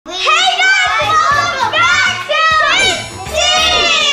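Excited, high-pitched children's voices calling out together in long, drawn-out shouts, over background music.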